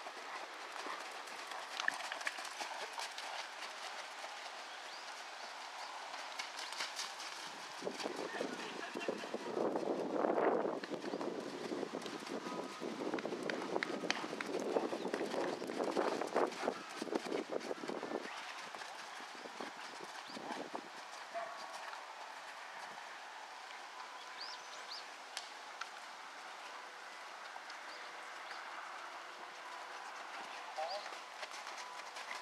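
Hoofbeats of a ridden Thoroughbred cantering on the soft sand footing of a riding arena.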